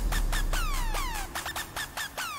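Electronic pop song intro: a run of synth zaps, each striking and then sliding quickly down in pitch, about three a second, over a deep bass that fades out about halfway through.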